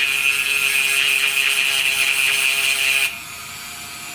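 Dremel rotary tool grinding down a steel rivet head, a steady high-pitched whine with a harsh grinding edge. The grinding stops abruptly about three seconds in and the tool runs on more quietly. The rivet is being shaved so it won't touch the carburetor's metering diaphragm.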